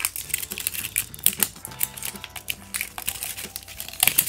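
Plastic blind-ball toy capsule being twisted and pried open by hand: irregular plastic clicks and the crinkle of its wrapper and tag.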